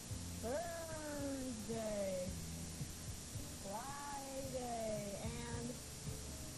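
Young children's voices in drawn-out, sing-song calls that swoop up and slowly fall, several in a row, over a steady low hum from worn VHS tape audio.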